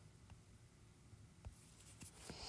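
Near silence: room tone with two faint taps of a stylus on a tablet screen.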